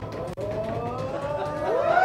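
Long drawn-out wordless vocal sound, one held note that slowly rises in pitch; a second voice joins near the end, sliding upward.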